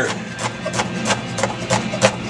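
Kitchen knife slicing an onion, each cut knocking on the hard surface beneath, about three or four quick cuts a second.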